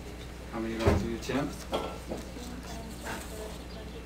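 Quiet voices in a room, short bits of speech too faint to make out, about half a second to two seconds in and again briefly near three seconds, over a steady low electrical hum.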